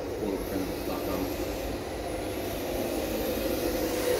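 Electric RC drift car with a brushless motor running: a thin high motor whine rising and falling with the throttle, over a steady low hum.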